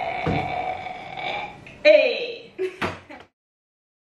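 Young women's voices drawn out in goodbye. About two seconds in comes a loud vocal sound that falls steeply in pitch, followed by two short vocal sounds. The sound then cuts off abruptly just after three seconds.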